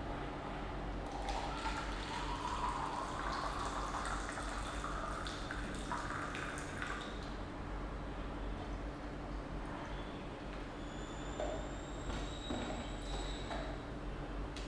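Just-boiled water poured from an electric kettle into a plastic measuring jug, the pitch of the stream rising over several seconds as the jug fills. A few light clicks follow near the end.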